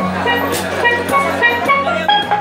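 Double steelpan played with rubber-tipped sticks: a quick melody of short ringing metallic notes.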